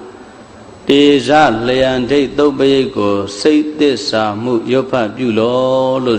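A man chanting Pali paritta verses in a melodic, sustained recitation. It begins about a second in after a brief pause for breath.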